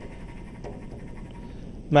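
Faint, steady background hiss in a pause between speech.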